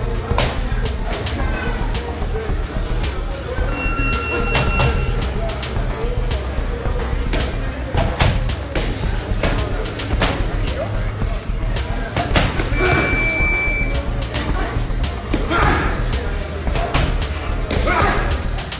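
Background music with a steady low beat, over irregular sharp smacks of punches landing on boxing focus mitts.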